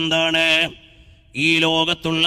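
A man's voice chanting in long, steadily held melodic notes, with a short break about halfway through.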